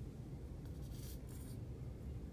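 Plastic glue bottle tip dabbing glue dots onto a tissue-paper strip: a few brief, soft scratchy touches of the tip on the paper, between about half a second and a second and a half in, over a low room hum.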